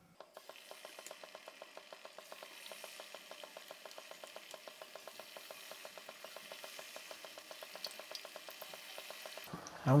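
Pakora batter frying in hot oil in a karahi: a fine, fast crackle that starts as the first battered potato slices go in and grows louder as more are added.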